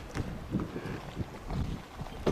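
Wind rumbling on an outdoor microphone, with a few soft low gusts.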